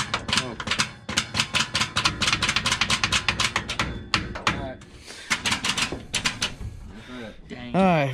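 Dirt late model race car's V8 engine turned over by its starter: a fast, even chugging of about ten beats a second for about four seconds, then a shorter burst a second later, without the engine firing. The car has an old, troublesome starter bolted on.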